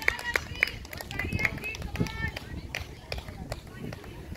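Indistinct voices of players and onlookers talking and calling out, strongest in the first half, with scattered sharp clicks.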